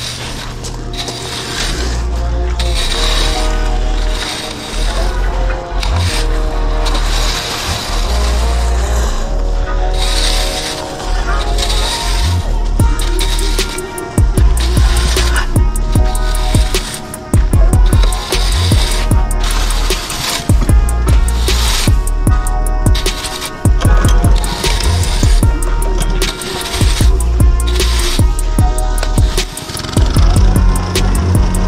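Background music with a heavy bass beat that becomes busier and more rhythmic about halfway through.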